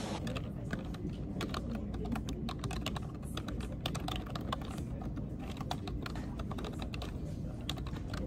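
Typing on a computer keyboard: a fast, irregular run of key clicks with no pauses, over low steady background noise.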